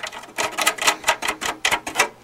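Quick run of sharp clicks and creaks, about six a second, as a petrified rubber foot is twisted by hand and its screw turns in the steel chassis.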